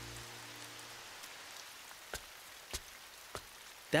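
Steady rain falling, an even hiss, with a few separate drips landing sharply about every half second from a second in.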